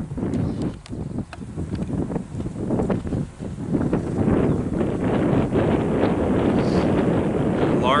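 Wind buffeting the microphone, a ragged low rumble that turns steadier and louder about halfway through.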